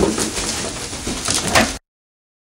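Rustling and handling of a bag, with scattered sharp ticks and clicks, cut off abruptly near the end.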